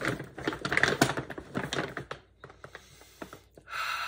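Quick flurry of taps and clicks from hands on a plastic-wrapped cardboard box, thinning to a few scattered ticks, then a long hummed sigh near the end.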